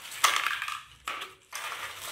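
Plastic parts of a handheld vacuum cleaner being handled and moved on a tile floor: about three short bursts of clattering and scraping, with the motor not running.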